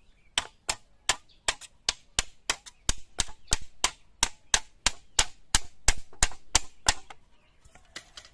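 Hammer striking a perforated galvanized sheet-metal grater held on a bamboo pole over a wooden block. About twenty sharp, evenly paced blows, roughly three a second, that stop about seven seconds in.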